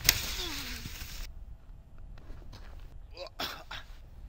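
A disc sled slamming onto the snow with a man lying on it, a sharp thump, then about a second of snow hissing under the sliding sled, with a man's voice falling in pitch. Short bits of voice follow near the end.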